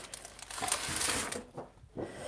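Crinkling and rustling as one half-fold kraft craft card is pulled from its pack, lasting about a second and a half before it goes quiet.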